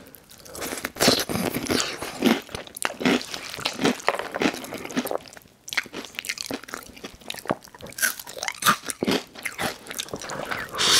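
Close-miked chewing of spicy noodles with Hot Cheetos, a dense run of crisp crunches and wet mouth sounds, with a brief pause about five and a half seconds in.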